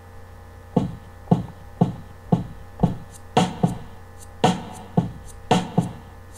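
Drum machine beat played through a boombox speaker and picked up by a laptop microphone: low drum hits about two a second, with brighter, fuller hits joining from about halfway in, over a steady electrical hum.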